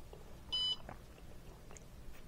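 Bartlett RTC-1000 kiln controller's keypad giving one short, high beep about half a second in, as a key is pressed.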